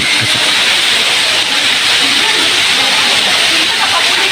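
A loud, steady hiss with no distinct events in it.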